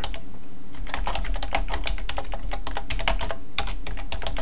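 Typing on a computer keyboard: a quick run of key clicks starting about a second in, over a low steady hum.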